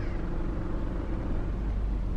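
Steady low rumble of a car driving slowly, heard from inside the cabin.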